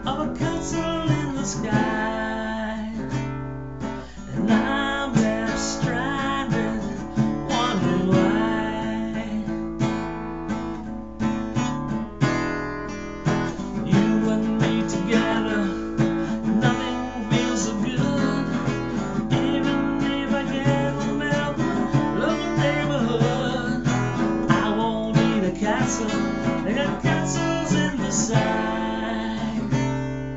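Acoustic guitar strummed and picked in a slow song, with a man's voice singing along.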